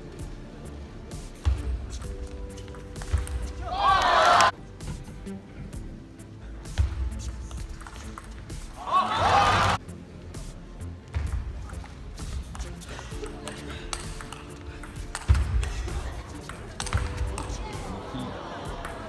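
Table tennis rally: the plastic ball ticks sharply and irregularly off bats and table. A loud shout comes about four seconds in and again about nine seconds in, over steady background music.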